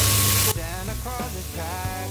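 Squid rings frying in chili oil in a wok, sizzling loudly, then cutting off abruptly about half a second in as hot water is poured over them. Background music with a melody carries on after.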